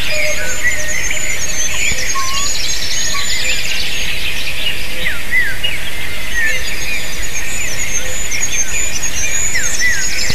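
Many small songbirds singing at once in a dawn chorus: overlapping high chirps, trills and short whistled phrases over a steady background noise.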